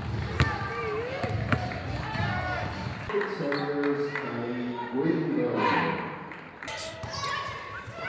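Basketballs bouncing on a hardwood gym floor in quick, irregular thuds, mixed with players' voices calling out. About three seconds in the bouncing thins out and raised voices shouting together take over.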